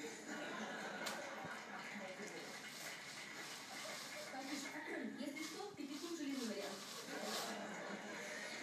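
A West Highland white terrier puppy chewing a raw carrot, with short, sharp crunches scattered through. Voices talk in the background, strongest near the end.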